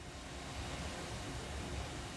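Room tone: a steady low rumble with a faint even hiss and no distinct events.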